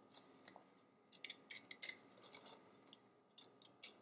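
Scissors cutting patterned paper: faint, irregular snips as the blades close in short strokes around a small cut-out shape.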